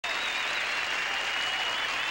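Studio audience applauding steadily, with high wavering whistles over the clapping.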